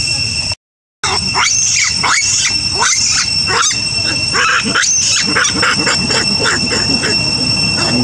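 Long-tailed macaques calling: a rapid series of short, high screeches and squeals with sliding pitch over a steady high-pitched drone. The sound drops out for about half a second near the start.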